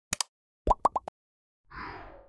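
Animated end-screen sound effects: a quick double mouse click, then a rapid run of short pops that rise in pitch, then a soft whoosh near the end.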